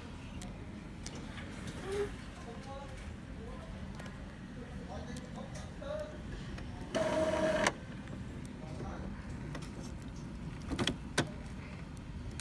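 Epson L3110 inkjet printer running its head-cleaning cycle: a low steady hum, a short motor whir about seven seconds in, and a couple of clicks near the end.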